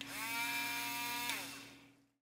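Knot Out grooming comb's small battery-powered motor switched on: its rotating blades whir up to speed, run steadily for about a second, then wind down with a falling pitch.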